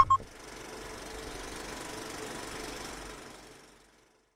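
Outro logo sound effect: a few sharp clicks, then about three seconds of steady noise with a faint hum that fades out near the end.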